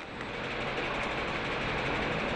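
Steady machinery noise of a factory workshop: an even hiss with a faint low hum underneath.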